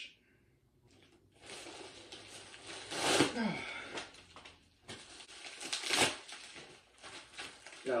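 A plastic mailer bag being ripped open and crinkled by hand, with two louder rips, about three seconds in and about six seconds in.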